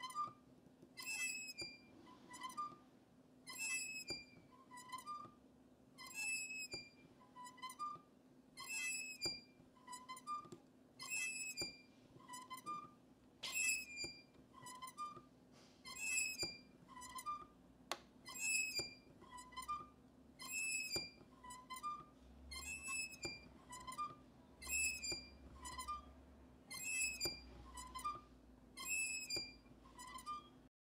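Metal S-hooks and chains of a wooden porch swing squeaking as the swing sways back and forth: a steady rhythm of short high squeaks, about one a second.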